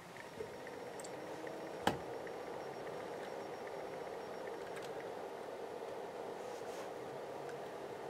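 A steady faint hum, with one sharp click a little under two seconds in.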